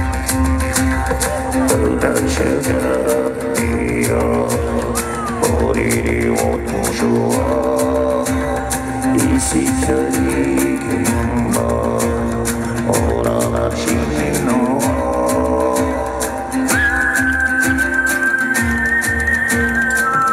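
Live music from an acoustic guitar and drum kit duo: strummed and plucked guitar over a steady low drone, with sliding melodic lines above and a quick, even cymbal and drum pattern throughout.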